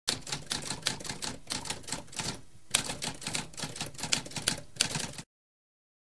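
Manual typewriter keys clacking in a rapid, uneven run of keystrokes, with a brief pause about two and a half seconds in; the typing stops abruptly a little after five seconds.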